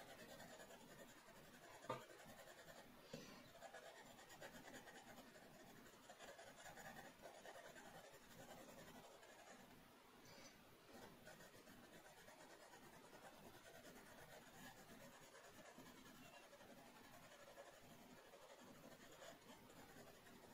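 Faint scratching of a graphite pencil on drawing paper as it shades, with a short click about two seconds in.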